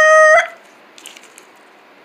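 A voice holding one steady high note, a vocal sound effect, which cuts off about half a second in; after that only faint room noise.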